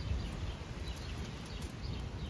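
Wind gusting on the microphone as an uneven low rumble, with faint short bird chirps now and then.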